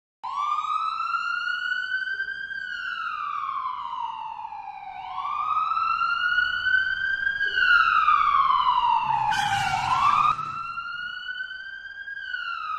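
Ambulance siren wailing in a slow rise and fall, each sweep up and down taking about five seconds. A short burst of noise comes about nine seconds in.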